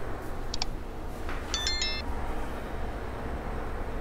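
Keys hanging from a door lock jingling, two short bursts of high, clear metallic rings about half a second and a second and a half in, as the bedroom door is moved, over a steady low rumble.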